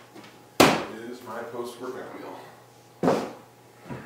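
Two sharp knocks of kitchen containers against a stone countertop, the louder one about half a second in and the other about three seconds in.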